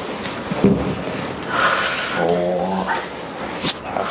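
A woman's pained groan with a breathy exhale, held steady and then rising in pitch into a whimper, from deep pressure being worked into her thigh. There is a sharp click near the end.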